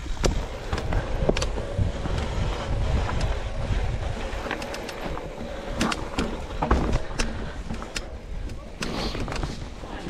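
Mountain bike descending a rough trail: a steady low rumble of tyres on dirt and rock, with frequent sharp clicks and clattering knocks from the bike over the bumps.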